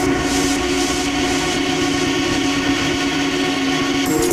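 Electronic music in a breakdown: a held synth chord with a hissing wash above it and no kick drum.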